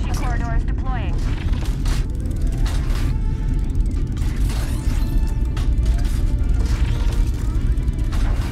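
Film sound effects of a starship docking: a loud, continuous deep rumble with repeated mechanical clanks and knocks, under music.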